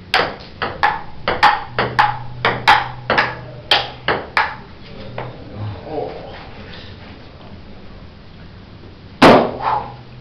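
Table tennis rally: the ping pong ball clicks off paddles and the table about two to three times a second, and the clicks stop after about four and a half seconds. One louder knock comes near the end.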